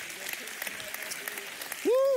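A congregation applauding in a large hall, with one voice calling out briefly near the end.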